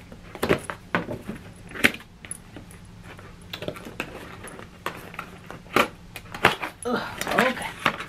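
A cardboard box being handled and opened by hand: a series of separate sharp taps and clicks of cardboard, with metal bracelets and rings jangling.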